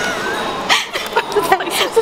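A woman's high-pitched squeal and giggling, with short rustling and tearing of a small cardboard sweets box being opened.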